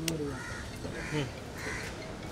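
Birds calling several times outdoors, with men's voices low underneath.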